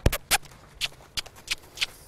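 Hooves of a horse moving off toward a trot, mixed with a person's footsteps, on the soft dirt of a round corral: about eight irregular sharp taps and scuffs, the loudest right at the start.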